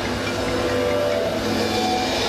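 A live reggae band starting a song, with held instrument notes and a low bass tone over a steady hiss of stage and crowd noise.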